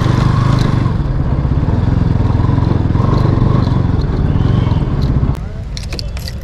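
Bajaj Pulsar NS200's single-cylinder engine running at low speed as the motorcycle creeps over loose rubble; its sound drops sharply about five seconds in.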